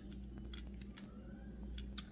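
Faint clicks and light rubbing from fingers handling a small diecast model car, a handful of small ticks scattered over a low steady hum.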